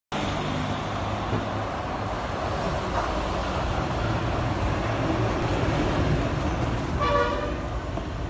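Steady low rumble of motor traffic, with a single short vehicle-horn toot of about half a second near the end.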